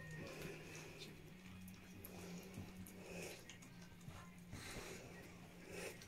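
Spitz puppies eating a wet mash from steel bowls, heard as faint, scattered lapping and smacking over a steady low hum.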